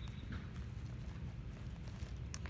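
A person moving through dry leaf litter and wood chips: light, scattered crunches and rustles over a steady low rumble.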